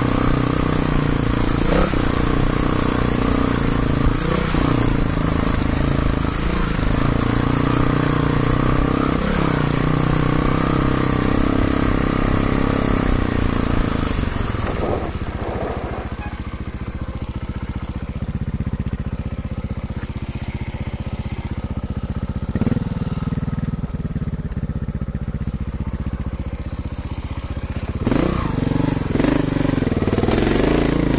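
Trial motorcycle engine running at low speed with short throttle blips. From about halfway it drops to a quieter, low-revving run, then revs up again near the end.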